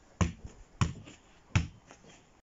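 Football kick-ups: three sharp taps of the ball being struck, about two-thirds of a second apart.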